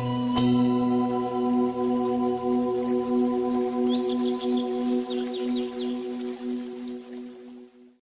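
Logo outro music: a bell-like tone, struck once, that rings on with a steady wavering pulse and fades out near the end. A brief high tinkling sparkle comes about four seconds in.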